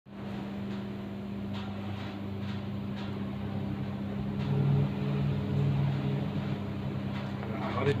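Steady low electrical hum under gusting storm wind that swells about halfway through, with a few faint creaks of sheet tin in the wind.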